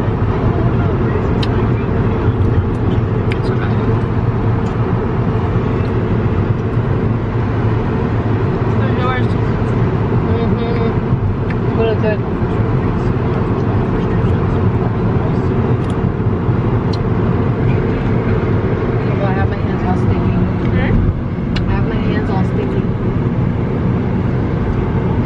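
Steady road and engine noise inside a moving car's cabin, with faint talk now and then.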